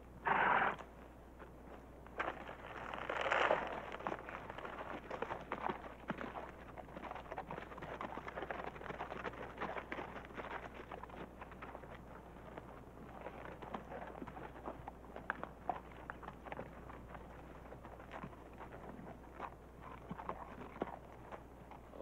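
Footsteps and horse hooves crunching and clopping irregularly over stony ground, with two short, louder noisy bursts in the first few seconds.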